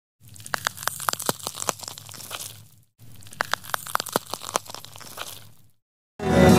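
A crackling sound effect: irregular sharp clicks and crunches over a low steady hum, heard twice in a row. Each run lasts about two and a half seconds and fades out.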